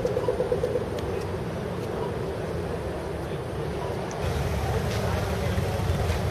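Car engines running in the street, a low rumble with a fast pulsing drone in the first second; about four seconds in the rumble steps up louder and denser.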